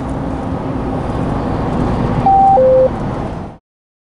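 Steady engine and road noise inside a moving lorry cab on the motorway. Two loud electronic beeps, a higher tone then a lower one, come a little past two seconds in. All sound cuts off suddenly near the end.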